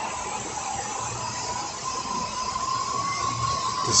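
Steady rushing of floodwater flowing down a street, with a thin steady high tone running under it.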